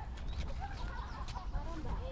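Domestic chickens clucking in short, overlapping calls, with small birds chirping higher up, over a steady low rumble.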